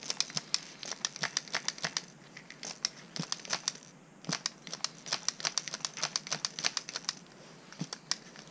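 Plastic crinkling and sharp clicks in quick, irregular runs, with a brief lull about halfway, as gloved hands squeeze a plastic hand pump that feeds gear oil through a tube into an outboard's lower unit.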